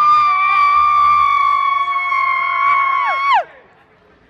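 Women's voices holding one long, high sung note, sliding up into it at the start and dropping off together about three and a half seconds in; a second, lower voice holds alongside and falls away just before the first.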